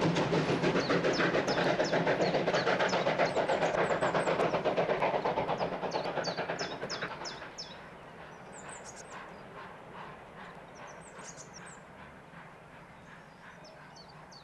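Diesel-hauled heritage passenger train passing close, its coach wheels clattering rapidly and evenly over the rail joints. The clatter fades about seven seconds in, and birds chirp over the quieter rail noise.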